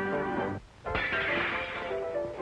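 Early-1930s cartoon band music breaks off about half a second in. After a short gap, a noisy crash sound effect lasts about a second as the umbrellas are thrown out of the window, and the music comes back in at the end.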